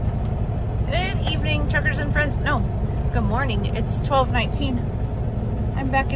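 A woman speaking inside a semi truck's cab over the steady low rumble of its idling diesel engine, a Kenworth T680.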